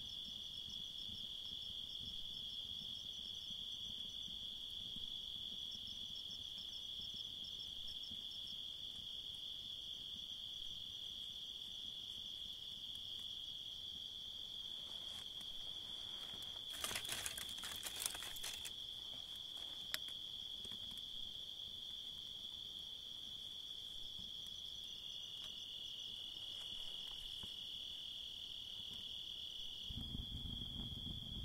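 Crickets chirping in a steady, continuous high trill, with a brief rustling crackle about halfway through.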